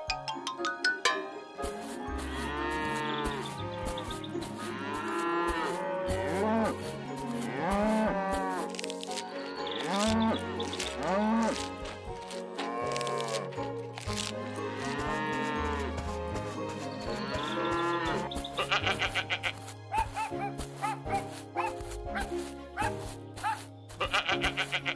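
Cartoon cows mooing again and again, each call rising and falling in pitch, over a steady children's backing music track; the moos stop a few seconds before the end.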